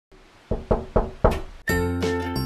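Four quick knocks on a front door, followed near the end by music starting.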